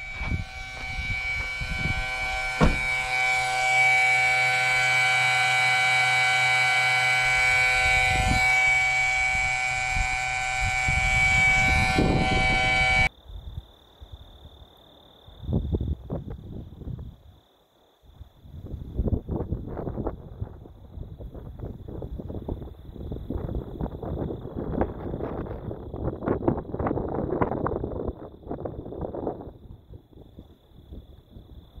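A portable air compressor running steadily with a high whine, its hose feeding a truck tyre, cutting off suddenly about 13 seconds in. After that, gusts of wind on the microphone with a faint steady high whine.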